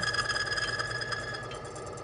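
Oil lubricity test machine (a Timken-type tester) running under load, its motor-driven steel roller pressed by the lever arm against the test bearing in oil: a steady high-pitched whine of several tones over a mechanical hum, the highest tone dropping out about a second and a half in. The noise rises as more pressure goes on and then smooths out, which the demonstrator puts down to the oil's anti-wear additives reacting with the heat.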